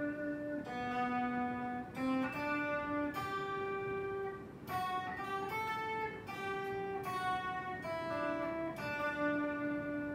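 Thinline Telecaster-style electric guitar with an f-hole playing a slow single-note melody, one held, ringing note at a time.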